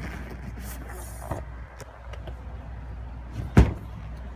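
Boat sun-pad hatch being handled: faint handling noise, then one loud thump a little over three and a half seconds in.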